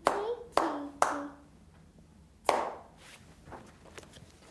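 A child clapping a short rhythm pattern with her hands: three claps about half a second apart, then a pause and one more clap about a second and a half later. She is clapping a rhythm to be checked against written notation.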